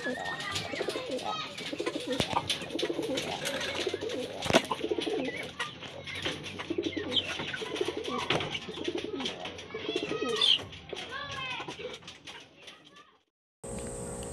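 Domestic racing pigeons cooing over and over, with sharp taps scattered through. Near the end the sound cuts off.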